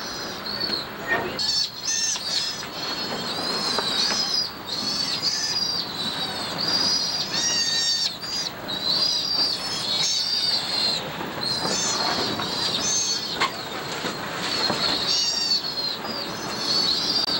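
Sea otter pups squealing, a run of high-pitched calls one after another with hardly a pause, over steady background noise.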